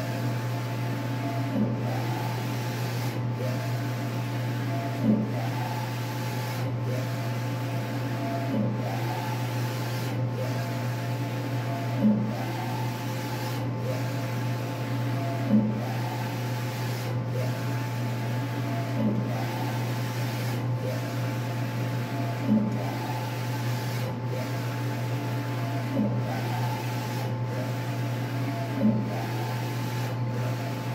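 Large-format inkjet printer with an XP600 print head printing: the carriage sweeps back and forth, each pass a rising-and-falling motor whine, with a short knock at the end of the travel about every three and a half seconds, over a steady hum.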